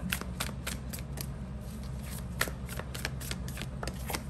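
A tarot deck being shuffled in the hands: a steady run of quick, irregular card clicks and flicks.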